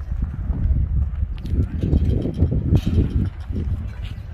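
Wind rumbling on the microphone outdoors, with irregular footsteps on a gravelly dirt path.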